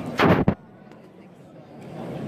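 A single loud bang from a festival firework rocket, ending in a sharper crack about half a second in, after which the crowd noise drops away for a moment.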